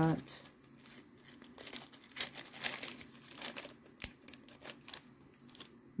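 Small clear plastic zip-lock bags crinkling in irregular bursts as they are handled and laid out on a table, with a sharp click about four seconds in.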